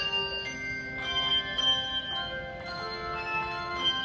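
Handbell choir playing a tune: handbells struck one after another about every half second, each note ringing on so that several overlap.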